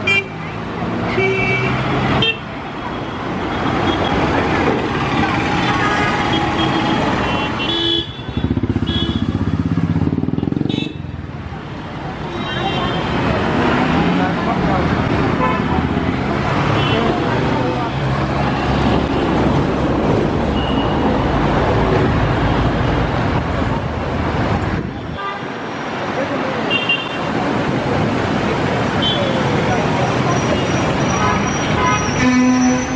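Busy city street traffic: bus, taxi and car engines running past close by, with frequent short horn toots. The sound changes abruptly a few times.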